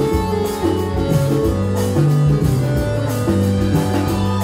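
Live band playing an instrumental passage of a Hindi film song: bass guitar line, guitar and keyboards over a steady drum beat with cymbals.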